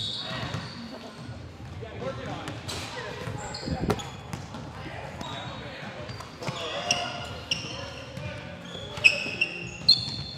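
Basketballs bouncing on a hardwood gym court, with scattered knocks, short high squeaks and background voices.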